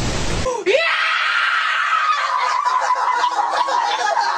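A half-second burst of TV static hiss, then a boy's long, high-pitched scream held for over three seconds, slowly falling in pitch.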